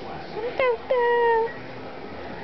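A squeaky dog toy squeaking twice: a short squeak, then a longer, steady squeak that falls slightly in pitch.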